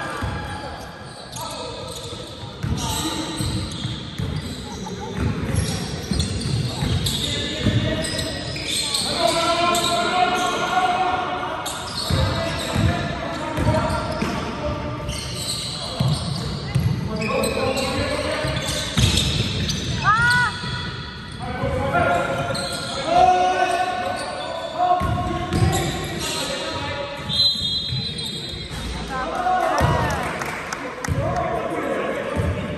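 A basketball bouncing on a sports-hall floor during play, with players' shouts and calls echoing in the large hall. There are a few short sneaker squeaks, about two-thirds of the way in and near the end.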